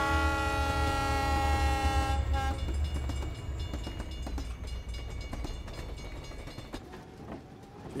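BNSF diesel freight locomotive sounding its multi-note air horn in one long blast, with a short toot about half a second after it, over the low rumble of the engine. The train then rolls steadily through the grade crossing, the noise slowly fading.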